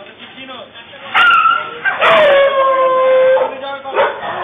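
A dog howling: a short, high cry about a second in, then a longer, louder cry that drops in pitch and holds steady.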